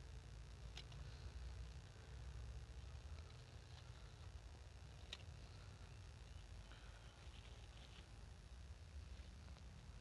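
Near silence with a faint low rumble and two faint, sharp clicks, about a second in and about five seconds in, as kailan leaf stalks are cut with a small knife.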